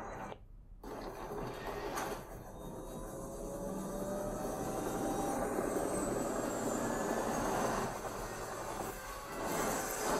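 A surround-sound test soundtrack of a helicopter scene playing through a MacBook Pro's built-in laptop speakers and picked up in the room. After a brief near-silent gap at the start, a rushing, noisy sound swells slowly, with a few faint gliding tones.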